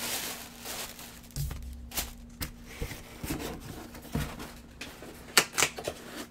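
Tissue paper rustling and crinkling as hands work through it inside a cardboard jersey box, with several sharp knocks and taps of the box being handled. The loudest is a pair of knocks near the end.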